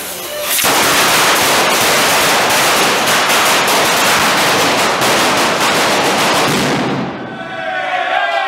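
A traca, a long string of firecrackers, going off in a rapid, unbroken run of bangs from about half a second in, cutting off about seven seconds in. Crowd voices start up just after.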